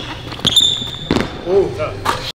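A basketball dribbled on a hardwood gym floor, with sharp bounces about half a second in and again just over a second in. Sneakers squeak high on the floor in the first half second, and a voice calls out near the end.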